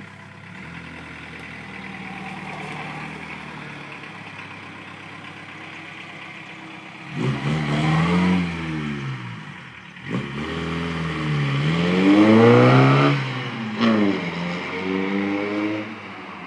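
VW Rabbit pickup's diesel engine pulling away. It runs low and steady at first, then revs up about halfway through, its pitch climbing, falling back at two gear changes and climbing again as it accelerates away.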